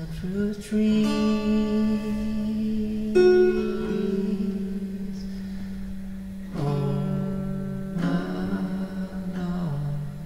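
Guitar playing slow strummed chords, five strums in all, each left to ring on for a second or a few seconds.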